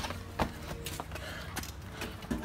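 A few scattered sharp knocks and thuds, the loudest about half a second in, over a faint steady hum.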